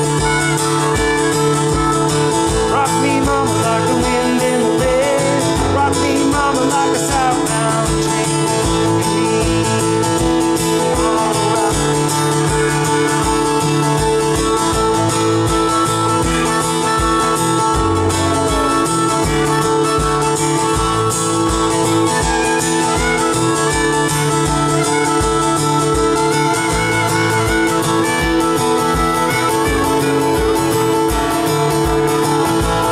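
Acoustic guitar strummed steadily under a harmonica solo played from a neck rack, in an instrumental break without singing.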